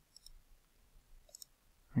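Two faint computer mouse clicks, about a second apart.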